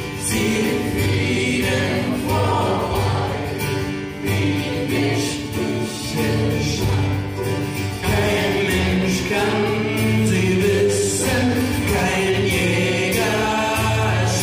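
Live folk duo: male voices singing together over acoustic guitar accompaniment.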